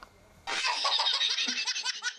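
A brief near-silent gap, then a quick run of laughter starting about half a second in: short, evenly repeated 'ha' pulses, several a second.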